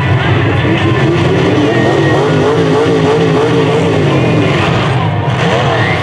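Stock car engines running loudly and steadily, with one engine's pitch wavering up and down through the middle.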